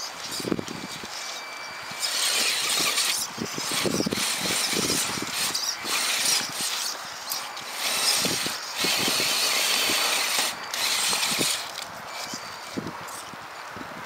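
Radio-controlled rock crawler's motor and gear drive whining in repeated spells of throttle as it climbs over boulders, with short knocks of its tyres and chassis on the rock.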